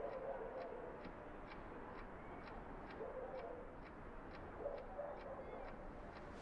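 Faint, even ticking of a clock, about two ticks a second, with a few soft low tones underneath.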